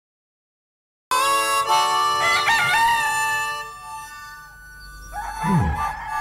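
Silence for about a second, then a rooster crowing once, a long drawn-out call that fades by about four seconds in. A low falling swoosh follows near the end.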